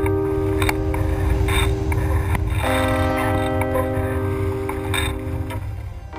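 Background music: held chords that change once partway through, over light ticking percussion and a low rumble, fading out near the end.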